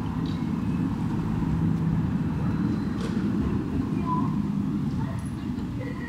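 City street traffic: the low rumble of a car driving past, easing off toward the end, with faint voices and a few light clicks in the background.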